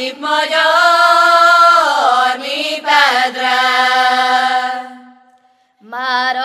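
Women's voices singing a slow Hungarian folk melody in the Gyimes 'lassú magyaros' style, without accompaniment, on long held notes that waver and slide between pitches. The phrase breaks briefly twice and fades out shortly before the end.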